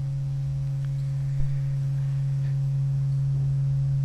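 Steady low electrical hum from the lectern microphone's sound system: one low tone with fainter higher tones above it, growing slightly louder.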